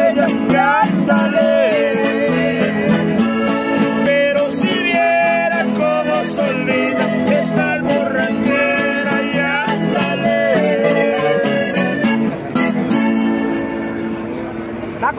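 Acoustic guitars playing a song's closing instrumental passage: a picked lead melody over a steady strummed rhythm, thinning out near the end.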